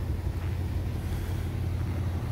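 A vehicle engine idling, heard as a steady low rumble.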